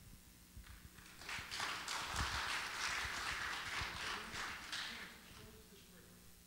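A small crowd clapping, starting about a second in and dying away near the end.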